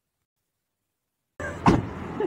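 Silence for over a second, then a sudden burst of outdoor noise with one loud, deep thump.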